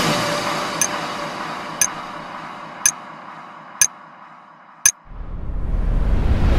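Five sharp clock-tick sound effects about a second apart over the fading tail of electronic music, then a rising whoosh that builds near the end.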